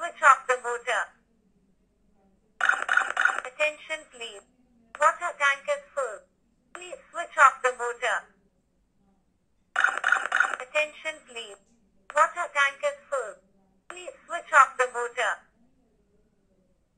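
An Arduino water-tank overflow alarm speaking its recorded voice warning through a small speaker: "Attention please. Water tank is full. Please switch off the motor." The message plays through twice, starting again after a short gap. The repeating warning signals that the water has reached the probes and the tank is full.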